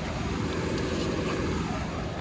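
Steady running noise of an idling Ford police SUV, heard close up at its front grille.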